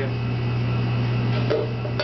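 Steady low hum of a restaurant kitchen's ventilation, with one light knock about three quarters of the way through.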